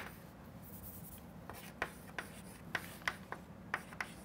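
Chalk writing on a chalkboard: faint, scattered short taps and scrapes as letters are written.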